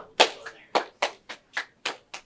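Hand clapping by a couple of people: a run of about seven sharp, slightly uneven claps, roughly three or four a second.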